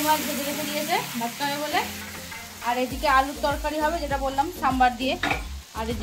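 Food sizzling in a hot pan, with stirring. The sizzle fades over the first second or two.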